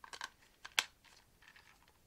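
Small plastic toy parts clicking and scraping as the glider's wings are pushed into a plastic hut piece, with one sharp click a little under a second in.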